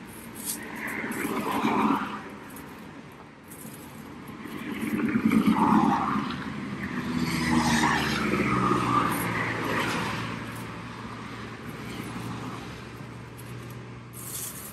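Cars passing on a highway, several passes in a row that each swell and fade, the loudest about five to six seconds in.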